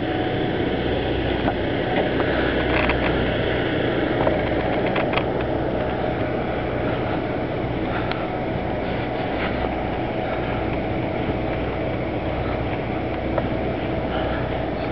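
Car moving slowly with its engine running: a steady engine hum and road noise heard from inside the car, with a few light clicks and rattles.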